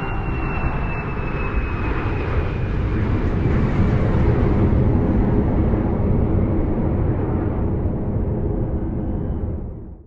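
Steady rushing engine noise with a faint whine slowly falling in pitch, swelling about four seconds in and fading out at the very end.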